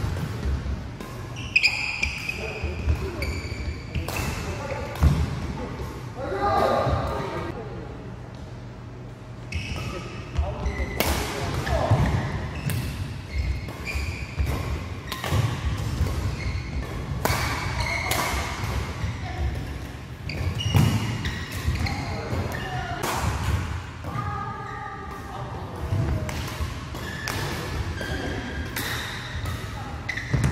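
Badminton rallies in a large hall: rackets striking the shuttlecock with sharp cracks many times over, shoes squeaking briefly on the court floor, and voices in between.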